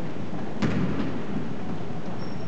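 A single basketball bounce on a hardwood gym floor a little over half a second in, with a short echo after it, over a steady hiss of background noise.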